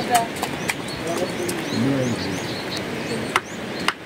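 Stones knocking together as they are handled and stacked into a dry stone wall, a few sharp clacks, the clearest near the end. Small birds chirp in short rising calls throughout.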